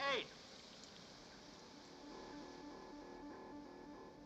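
Faint, even hiss of the high-pressure decontamination water jets. From about halfway, a low electronic tone warbles rapidly back and forth between two pitches.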